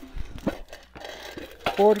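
Rustling and a few light clicks of handling, with one soft low thump early on. A woman's voice starts near the end.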